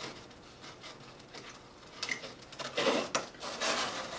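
Rustling and rubbing of wired sheer ribbon being handled and pushed into place, in a few short bursts over the second half, the loudest about three seconds in.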